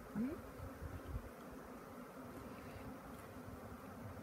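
Swarm of honeybees flying, a steady, low-level buzz.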